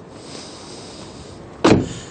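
Car door of a 2001 Porsche 911 Carrera (996) shut once, a single solid thump near the end over a low steady background hiss.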